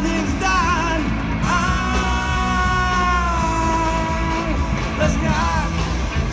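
Live rock band of electric guitars, bass guitar and drums playing a Bicol-language song, with a man singing lead. Near the middle he holds one long note for about three seconds before the sung line moves on.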